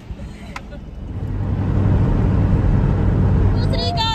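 Road and engine rumble of a car moving at highway speed, heard from inside the cabin, swelling over the first two seconds and then holding loud and steady. Near the end a sustained high pitched tone cuts in over it.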